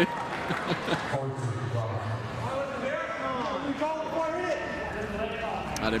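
Indistinct men's voices talking, with a couple of short knocks in the first second.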